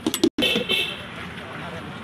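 Busy roadside street noise of voices and traffic, with a few sharp clicks in the first moment, a brief break in the sound, and then a short high-pitched tone like a vehicle horn.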